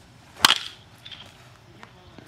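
Baseball bat striking a pitched ball once: a single sharp crack about half a second in.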